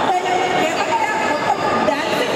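Speech amplified over a public-address system in a large, echoing hall, with crowd noise underneath.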